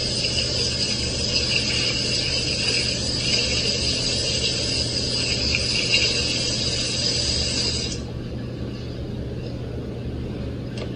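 Kitchen faucet running, its water stream splashing over gloved hands in the sink as a steady hiss that stops suddenly about eight seconds in when the tap is turned off.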